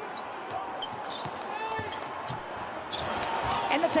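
Basketball being dribbled on a hardwood court during an NBA game: a series of sharp, irregular bounces over the low hum of a large, mostly empty arena.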